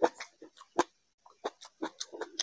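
Close-miked chewing with wet mouth smacks: a string of short, sharp smacking clicks at an uneven pace, with a brief pause about halfway through.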